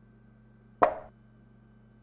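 A single short click of a chess-move sound effect, a piece being set down on the board, about a second in, dying away quickly.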